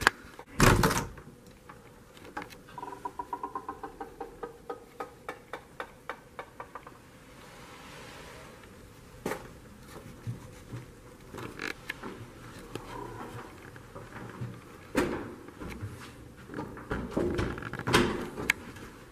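A hotel room door shutting with a sharp thud about a second in, then a run of quick light ticks and scattered soft knocks of walking and camera handling.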